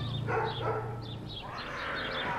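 Short animal calls with a dog-like character, over scattered bird chirps and a low steady hum that stops about one and a half seconds in.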